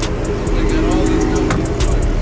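A car engine running steadily at idle, with music with a steady beat playing over it.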